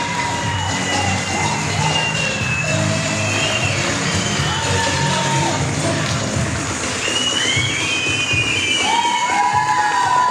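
A crowd of guests cheering and whooping over music playing, with the high whoops growing thicker over the last few seconds.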